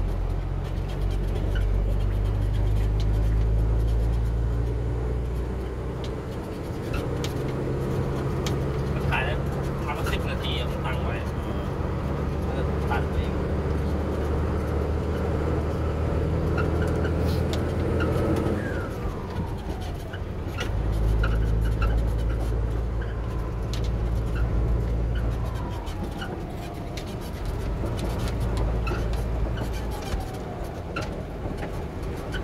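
Truck engine running while driving, heard from inside the cab: a steady low drone that eases off and picks up again twice, with scattered clicks and rattles of the cab.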